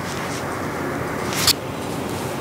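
Steady background noise, an even hiss, with one brief sharp sound about one and a half seconds in.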